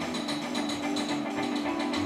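Live band of electric guitar, upright bass, piano and drum kit playing an instrumental passage: a rapid, even clicking runs over a held low note.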